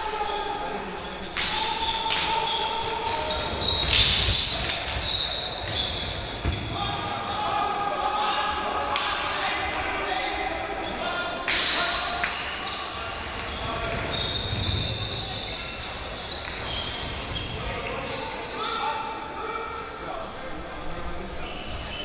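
Indoor hockey play in a sports hall: scattered sharp clacks of hockey sticks striking the ball, over a background of distant players' and spectators' voices.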